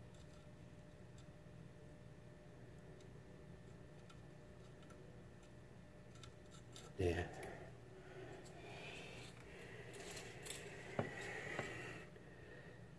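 Faint clicks and handling of a soldering iron and solder wire at a speaker's terminals while wires are soldered on. Over the last few seconds there is a soft hiss, with a few sharper metallic clicks just before the end.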